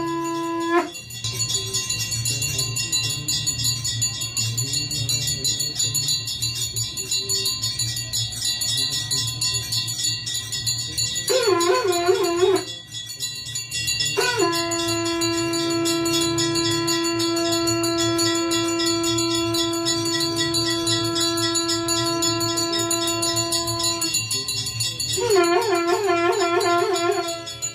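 Conch shell (shankh) blown: a wobbling blast that stops about a second in, another short wobbling blast about 11 seconds in, then one long steady note held for about ten seconds, and wobbling blasts again near the end. A hand bell rings steadily throughout, as in aarti.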